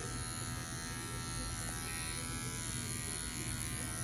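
Electric dog grooming clippers running with a steady hum as they trim the hair along the edge of a dog's ear.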